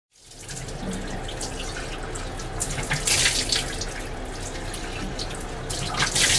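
Bathroom washbasin tap running steadily, with louder splashing about halfway through and again at the end as water is scooped up to wash a face.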